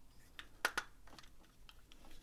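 Plastic parts of a Fans Hobby MB-16 Lightning Eagle transforming robot figure clicking as its chest panel is pushed and tabbed into place: a few quiet, sharp clicks, the loudest a little after half a second in.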